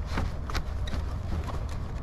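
Plastic front grille of a Ram 1500 Classic being tugged loose from its retaining clips by hand: several light, irregular clicks and knocks over a low, steady rumble.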